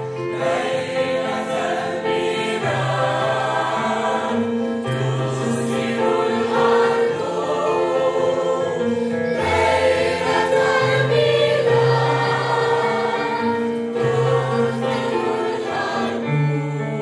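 A mixed choir of children and adults singing a Christmas song with piano accompaniment, in slow, held notes over a steady bass line.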